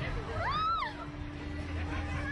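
A woman's single high-pitched squeal, rising and then falling in pitch, about half a second in, over a steady low hum.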